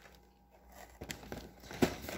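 Faint light knocks and rubbing from a cardboard box of soda crackers being handled and set down among cans and boxes, starting about a second in, with one slightly louder knock near the end.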